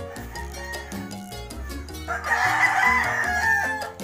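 A rooster crowing once: one long crow that starts about two seconds in and tails off near the end, over background music with a steady beat.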